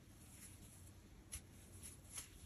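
Near silence: faint rustling of a crochet hook being worked through bulky cotton yarn, with a small tick a little over a second in and another near the end.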